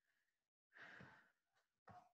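A person's faint sigh about a second in, with shorter, quieter breath sounds around it. Each cuts off abruptly to silence.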